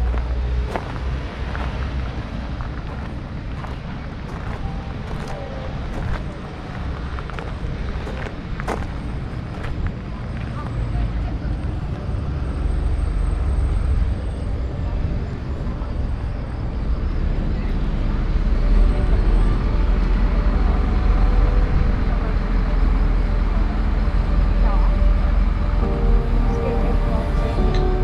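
Outdoor street ambience: a steady rumble of road traffic, louder in the second half, with snatches of people talking nearby and a few light clicks in the first half.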